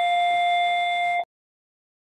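A steady electronic buzzer tone, held at one pitch, that cuts off suddenly just over a second in.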